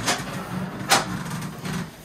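A person rolling over on a padded treatment table: shuffling and rustling of body and clothes against the cushions, with one sharper scuff about a second in.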